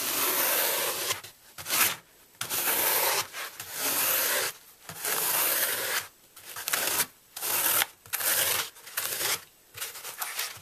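A metal fork scraping grooves into a block of green floral foam in repeated strokes, about one a second, each a dry, crumbly rasp.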